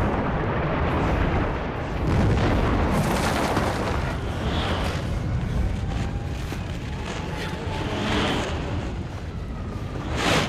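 Film sound effects of the XF-11 plane crash sequence: a dense, continuous heavy rumble of explosions, loud throughout.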